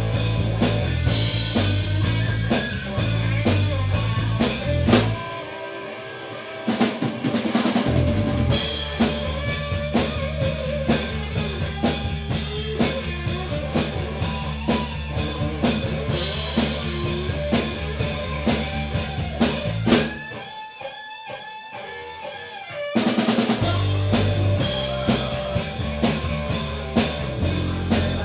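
Live rock band playing without vocals: drum kit, bass guitar and electric guitar. Twice the full band drops out briefly, leaving a quieter, thinner passage before the drums and bass come back in.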